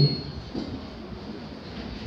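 A man's voice trails off at the start, then a steady low background noise with no distinct events: room tone in a pause between his sentences.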